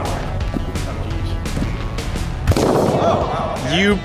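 A latex party balloon bursting with one sharp pop about two and a half seconds in, followed by shouting, over steady background music.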